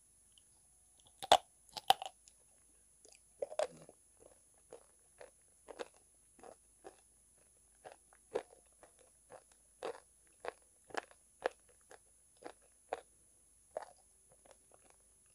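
Biting into and chewing calabash chalk (ulo, baked kaolin clay) close to the microphone: two sharp crunching bites a little over a second in, the loudest sounds, then steady crunchy chewing about twice a second.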